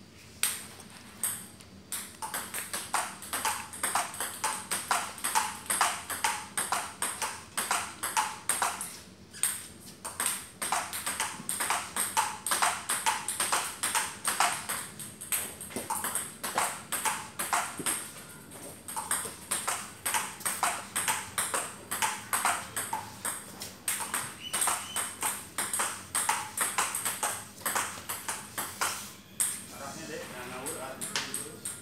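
Table tennis ball clicking off paddles and the table in a continuous forehand rally: a quick, even run of sharp clicks with a few short pauses.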